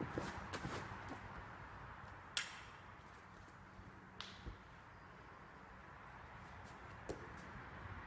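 Quiet gym room tone with a few short, sharp noises from a lifter setting up under a loaded strongman yoke: a hiss about two and a half seconds in, another about four seconds in, a low thump just after it and a faint click near the end.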